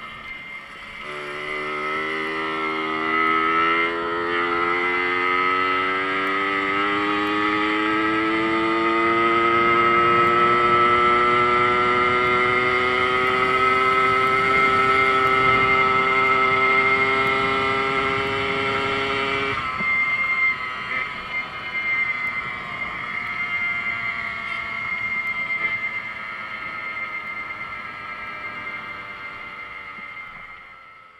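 Small two-stroke motorcycle engine, heard from the rider's seat. Its pitch climbs slowly as it pulls for about twenty seconds, then drops off suddenly. It carries on lower and weaker, fading out near the end.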